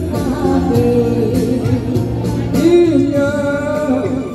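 A woman singing into a handheld microphone over a karaoke backing track with a steady beat, holding wavering notes and sliding between pitches.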